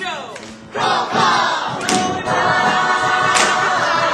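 A large group of voices singing loudly together over musical accompaniment. It comes in about three-quarters of a second in, after a brief falling swoop, with sharp hits about every one and a half seconds.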